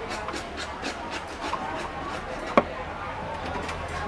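Serving-counter clatter: plates and utensils clinking and knocking while grilled pork chops are plated onto rice, with one sharp knock about two and a half seconds in, over background chatter.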